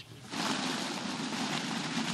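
Minibus driving along a freshly laid crushed-stone road: engine running and tyres on loose gravel, a steady sound starting about a quarter second in.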